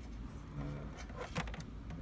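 Faint clicks and rubbing of a plastic monitor bezel being handled over a low steady hum.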